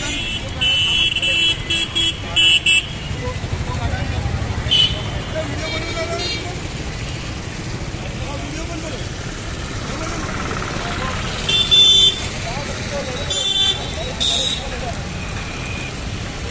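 Road traffic with vehicle horns beeping: a run of short beeps in the first three seconds and more near the end, over a steady traffic rumble and background voices.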